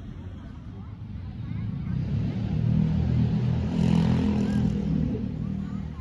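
A motor vehicle passing by: its engine rumble swells from about a second in, peaks midway and fades near the end.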